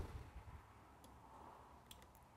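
Near silence: room tone with two faint clicks, one about a second in and one near the end.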